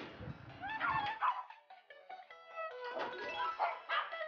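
Small dogs whining and yipping in short bursts, about a second in and again near three seconds, over background music.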